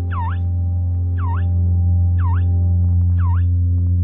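Electronic lift chime sounding once for each floor passed as the lift rises, a short chirp that dips and rises in pitch, about once a second, over a steady low drone.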